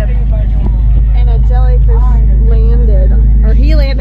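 Powerboat engines running steadily under way, a loud, even low drone beneath voices.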